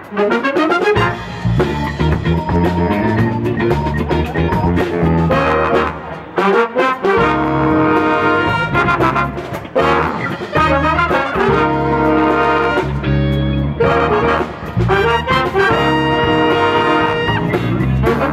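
Big band playing jazz: trombones, trumpets and saxophones in held ensemble chords over a drum kit and rhythm section, with brief breaks in the music about a third and three quarters of the way through.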